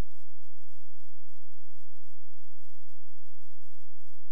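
Steady low electrical hum from idle playback equipment with no programme sound, broken by about a dozen soft, irregularly spaced low thumps.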